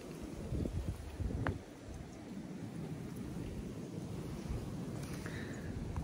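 Wind buffeting the microphone outdoors: a low, uneven rumble that rises and falls, stronger in the first couple of seconds. There is one faint click about one and a half seconds in.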